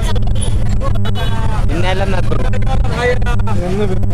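Motorcycle engine running at low speed with a steady low hum, under people's voices and crowd chatter.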